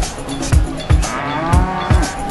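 A Limousin cow moos once, a drawn-out call starting about a second in and lasting about a second, its pitch rising and then falling. Background music with a steady drum beat plays throughout.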